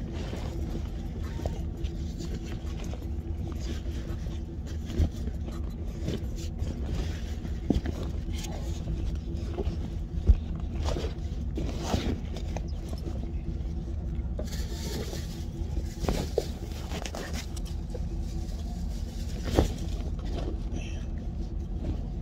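A car engine idling steadily with a low, even hum, broken by a few sharp knocks.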